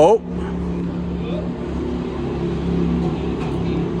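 Batman Tumbler replica's engine idling steadily with an even low hum.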